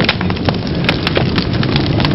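Crackling fire sound effect: dense, irregular sharp pops and snaps over a steady low rumble.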